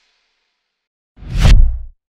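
A whoosh sound effect swelling up with a deep bass hit, starting a little over a second in and cutting off after under a second.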